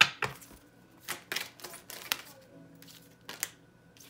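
Tarot cards being shuffled and handled by hand: an irregular series of sharp clicks and snaps as the cards slap against each other and the table.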